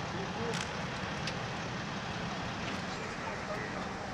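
Steady engine drone of machinery running nearby, with a few faint clicks.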